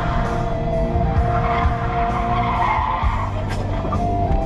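A vehicle engine running hard, with tyres skidding.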